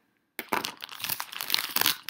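Soft plastic wrapper of a pack of hand wipes crinkling as it is handled, starting about half a second in.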